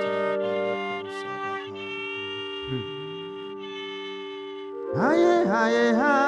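Slow worship music: sustained string-like chords held and changing every second or so. Near the end a voice comes in louder, its pitch sliding and wavering.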